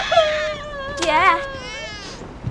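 A baby crying in one long, wavering wail, joined briefly about halfway by a lower, whimpering adult voice.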